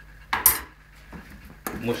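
A metal kitchen utensil clattering against a dish, once and sharply about half a second in, followed by a couple of faint clicks.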